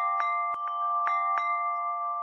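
Chime music: bell-like notes struck about twice a second, each ringing on over a held chord.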